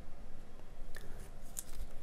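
Folded paper calendar cutouts being handled and set down on a tabletop: a few faint, short paper ticks and rustles over a low steady room hum.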